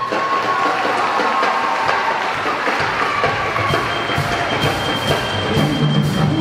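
Winter percussion ensemble playing: the music comes in suddenly at the start with held tones over light percussion, a higher held tone joining about two-thirds of the way in and lower tones near the end.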